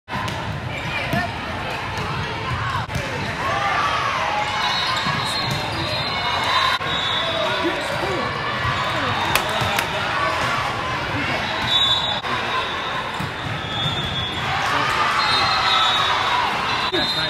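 Indoor volleyball play echoing in a large gym: sharp ball hits and short high squeaks, with players and spectators calling out throughout.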